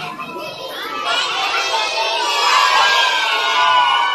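A crowd of young children shouting and cheering together, the many high voices swelling louder about a second in.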